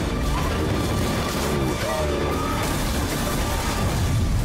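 Action-movie trailer music with crashing impact hits.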